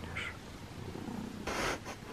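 Tabby cat purring softly while being stroked. A short burst of rustling noise comes about one and a half seconds in.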